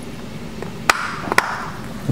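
Two sharp plastic clicks about half a second apart, roughly a second in: a white plastic retaining tab being snapped onto a trim panel.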